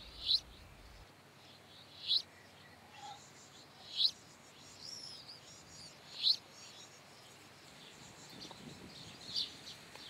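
Birds chirping: short high calls spaced a couple of seconds apart, the strongest about two, four and six seconds in, over a faint background hiss.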